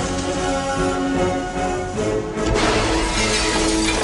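Film music with sustained held notes. A noisier rush of sound joins about two and a half seconds in.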